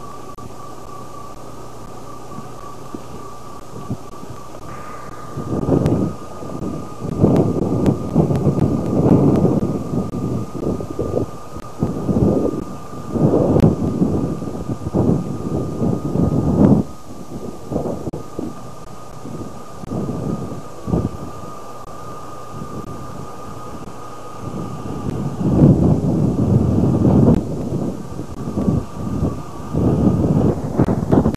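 A car driving on a rough gravel road, heard from inside: a steady hiss at first, then from about five seconds in irregular heavy rumbling gusts of road and wind noise that surge and fade every second or two.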